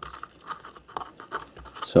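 Faint, irregular scratching and rubbing as fingers tuck thin wireless antenna cables into place against a laptop's plastic chassis.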